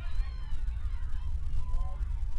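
A few short, faint honks of geese near the end, over a steady low rumble of open-air field sound.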